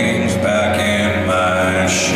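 A man singing a slow melody in long held notes, accompanied by his own acoustic guitar, heard through a live hall's sound system.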